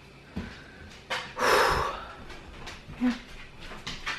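A Dalmatian dog giving one short, loud breathy huff about a second and a half in, with a few soft clicks around it and a brief faint whine-like note near the end.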